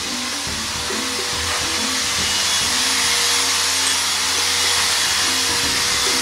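A machine in the workshop runs with a steady rushing hiss, even in level throughout, with a thin steady tone and a low hum beneath it. Music plays faintly underneath.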